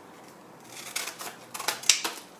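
Scissors cutting the corner off a paper seed packet: the packet crinkles, then a few sharp snips come in the second second.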